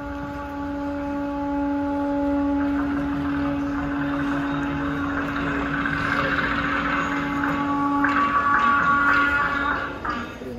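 A long, steady pitched tone held for about eight seconds, with a higher tone taking over near the end.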